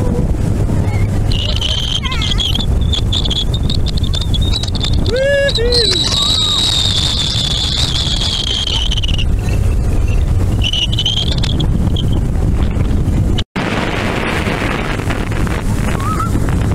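Motorboat running fast across choppy water: a heavy, steady rush of wind buffeting the microphone over the engine and hull noise. A thin high-pitched whine rides on top for several seconds, and short voice cries come about five seconds in.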